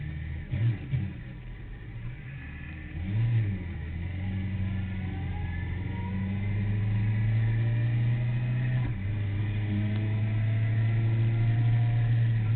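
Sport motorcycle engine heard from an onboard camera: a few short blips in the first second, then pulling away about three seconds in and running steadily, growing louder, with a brief dip near nine seconds.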